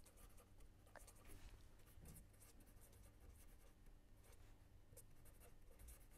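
Near silence, with the faint scratching and small ticks of a pen writing on paper.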